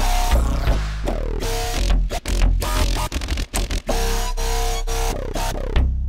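Synth bass lines played live on five layered Serum software-synthesizer bass patches split across one keyboard: heavy low notes changing pitch in a choppy rhythm, with repeated falling pitch sweeps.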